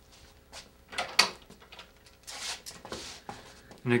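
Light clicks and knocks from a road bicycle being handled in a repair stand, the sharpest click just over a second in, with a short rustle a little past the middle.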